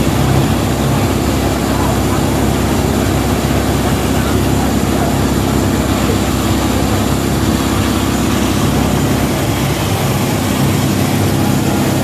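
A fire truck's engine driving its water pump at steady revs, with a loud rushing hiss, while it feeds a hose stream.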